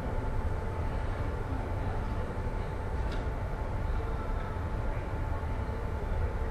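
Steady low room rumble with a faint, even whine, during a silent pause; one small click about three seconds in.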